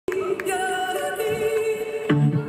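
Opening of a live song: a man singing a long held note with the accordion sustaining beneath it and no beat, the note stepping up in pitch about a second in.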